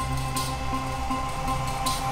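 Background drama score: steady held high tones over a low bass pulse that repeats about every two-thirds of a second, with two brief high swishes.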